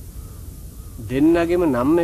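A man's voice making a long, drawn-out vocal sound that slides up and down in pitch, starting about a second in, after a quieter first second.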